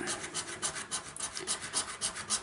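A coin scraping the scratch-off coating of a scratchcard in quick, repeated back-and-forth strokes, about five a second.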